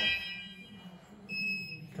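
Fire alarm sounders cutting off with a fading stack of high steady tones just after the start, then a single short beep from the fire alarm panel's buzzer about a second and a half in.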